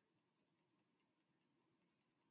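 Near silence, with at most a very faint scratch of a coloured pencil shading on paper.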